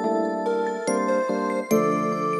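Plugg-style melody loop from a sample pack: layered synth notes and chords with no drums or bass under them, with new notes struck about a second in and again near the end.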